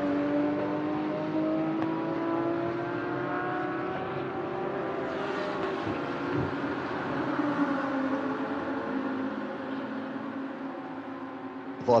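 GT3 race car engines running on the circuit. One engine note rises slowly over the first few seconds as the car accelerates, and another car's note falls as it passes about midway.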